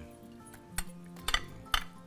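Metal clinks of a serving spoon against a pan and a metal ring mold as pilaf is plated, two sharp clinks in the second half, over steady background music.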